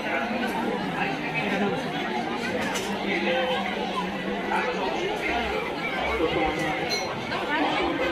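Crowd chatter: many people talking at once as they mill through busy market stalls.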